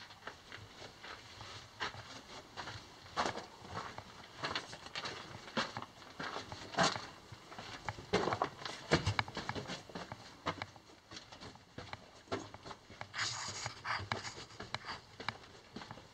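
Footsteps on the rubbly rock floor of a mine tunnel with a person's panting breath, coming as irregular short scuffs and breaths while walking quickly.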